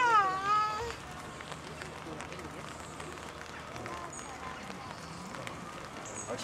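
One high, pitched cry about a second long at the start, falling in pitch and then levelling off. After it comes a faint murmur of people's voices with a few faint calls.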